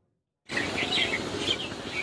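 Birds chirping in short repeated calls over a steady outdoor background, starting about half a second in after a brief silence.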